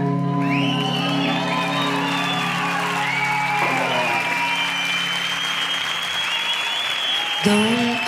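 A held chord from the band rings and fades out about halfway through, under an audience applauding and cheering. A new chord starts just before the end.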